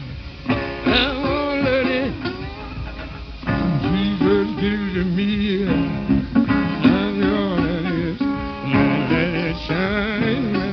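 Live blues performance: acoustic guitar playing, with a man's singing voice.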